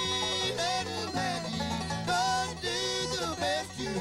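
Bluegrass band playing live: banjo and acoustic guitar with mandolin, and singing that comes in about half a second in.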